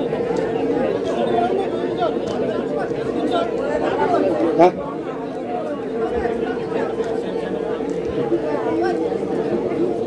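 Many people talking among themselves in an audience, a steady murmur of overlapping voices with a steady hum running underneath. One brief louder sound comes about halfway through.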